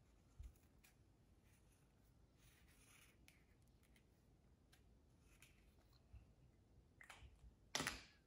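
Faint scratching of a felt-tip marker drawing on soft kitchen-roll tissue, with a few light clicks scattered through. Near the end there is one sharper click as the markers are swapped and one is set down on the counter.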